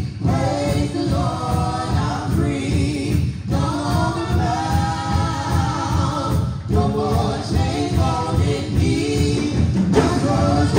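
Gospel praise team of one man and two women singing together into microphones, amplified over a PA. The phrases are sustained, with short breaths between them about a third and two thirds of the way through.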